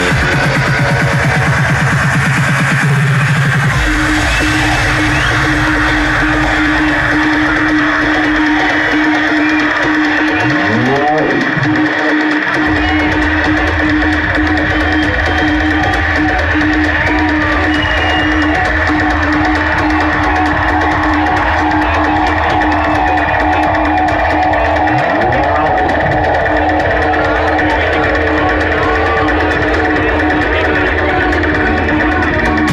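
Loud electronic dance music from a live set over a PA: a steady driving beat, with a held synth tone coming in a few seconds in. Twice, sweeping pitch glides rise and fall, and the bass drops out briefly about a third of the way through before the beat returns.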